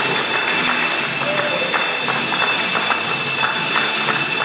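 Audience clapping by hand over background music, with crowd voices mixed in.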